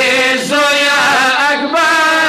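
Two male voices chanting a noha, a Shia mourning lament, unaccompanied, in drawn-out notes that waver in pitch. The chant breaks briefly twice, about half a second and a second and a half in.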